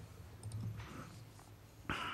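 Faint clicks of a computer mouse over a low, steady room hum, with a short rush of noise near the end.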